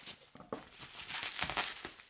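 Bubble wrap crinkling and crackling as it is carefully unwrapped by hand. It starts about half a second in and grows busier toward the end.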